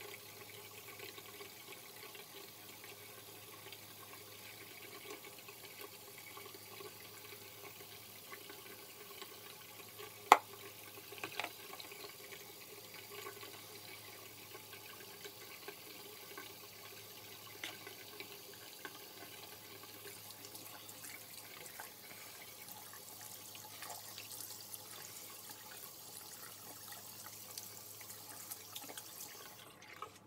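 Water running steadily from a sink tap, with fingers rubbing a gritty face scrub. A single sharp click about ten seconds in.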